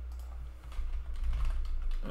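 Typing on a computer keyboard: a short run of light keystrokes, mostly in the second half, over a steady low hum.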